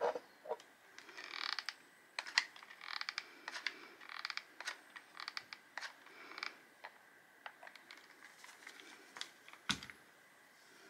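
Hot glue gun in use: its trigger and feed mechanism click and creak in a string of short bursts as glue is pushed onto a resin rose. A sharp knock comes near the end as the gun is set down on the table.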